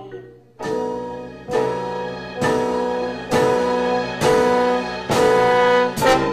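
Jazz chamber ensemble with bass trombone, alto sax, piano and drums hitting six loud held chords in a row, about one a second, each louder than the last.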